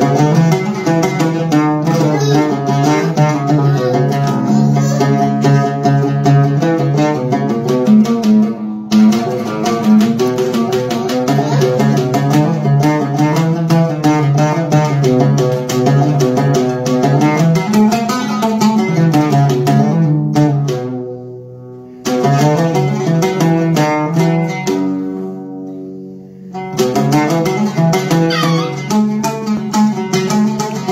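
Solo oud played as an instrumental: a melody of quick plucked notes, with a few short breaks where the notes die away, about nine, twenty-one and twenty-six seconds in.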